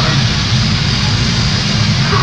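Grindcore band playing live: a loud, unbroken wall of distorted guitar and bass over fast drumming.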